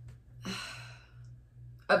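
A woman's breathy sigh lasting about half a second, followed near the end by her voice starting again, over a steady low hum.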